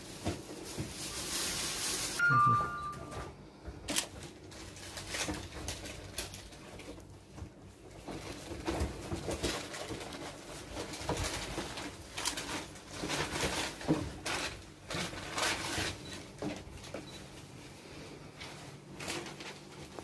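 Rustling and handling noises as items such as paper and plastic packets are searched through in a small room, with a short two-note electronic beep about two seconds in.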